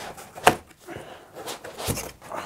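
Foam packing blocks and cardboard flaps being handled as the foam is lifted out of a box: soft rubbing and scuffing with two sharp knocks, one about half a second in and one near the end.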